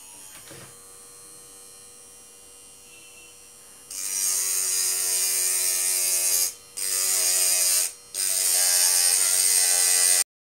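Small handheld DC-motor mini drill with a brass chuck and a cutting disc, running with a loud high-pitched whirr in three runs of a few seconds each, broken by two short stops. A faint steady buzz comes before the first run.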